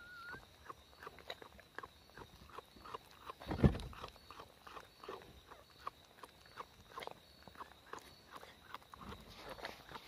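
Mother dog working over her newborn puppy, which is still in its birth sac: a run of short, irregular wet clicks and smacks, typical of licking the sac off, with a brief faint squeak at the very start and one loud thump about three and a half seconds in.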